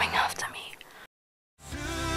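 A woman's breathy whisper that fades away over about a second, followed by a moment of dead silence; music comes in near the end.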